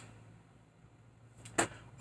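Quiet room tone with a low steady hum. About a second and a half in comes one short, sharp intake of breath just before speaking resumes.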